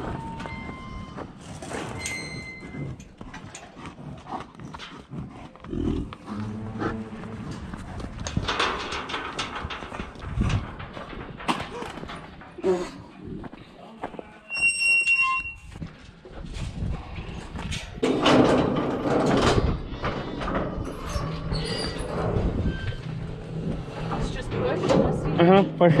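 Clanks and rattles of steel pipe livestock gates and pens being handled, with a short metallic squeal about fifteen seconds in and louder clattering from about eighteen seconds on.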